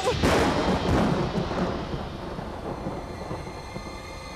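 A sudden deep rumbling crash, like thunder, starting just after the beginning and dying away over about two seconds: a film sound effect.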